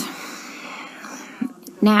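A woman's breathy, whisper-like sound as she pauses, then her speech resumes near the end.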